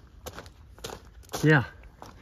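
Footsteps on a gravel path, a few faint crunching steps spaced about half a second apart, with a single spoken "yeah" in the middle.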